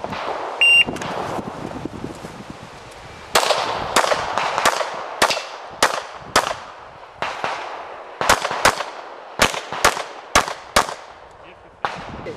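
Electronic shot-timer start beep about a second in. Then a Glock pistol fires about fifteen rapid shots in quick strings with short pauses between them, each shot followed by a brief echo.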